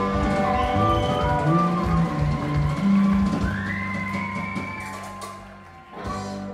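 Live rock band with electric guitar, bass, drums and harmonica holding sustained closing notes. A high note slides upward about three and a half seconds in, and the sound fades away over the last few seconds.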